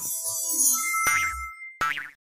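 Animated logo sound effect: a shimmering, sparkling sweep with short chime notes, then a ringing two-note ding over a low boing about a second in, and a brief closing hit near the end.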